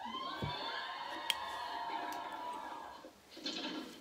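Sitcom sound from a television playing in the room: a held, pitched sound lasting about three seconds, with a sharp click about a second in.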